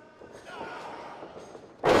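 Low crowd murmur in a large hall, then near the end a sudden loud thud as a wrestler is slammed down onto the ring mat.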